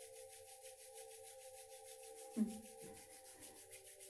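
Palms rubbed briskly together to warm them up, a fast, even back-and-forth swishing. A faint steady drone of background music sits underneath, and a short "hm" comes a little past halfway.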